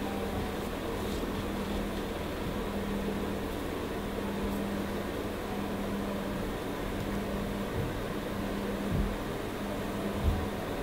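Steady background hum and hiss of room noise, with a brief low thump about nine seconds in.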